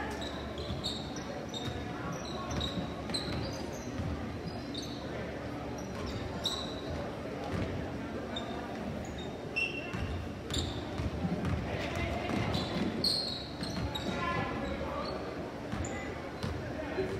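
Basketball game in a gymnasium: sneakers squeak on the hardwood court in short high chirps and the ball bounces, over a steady murmur of spectators' voices.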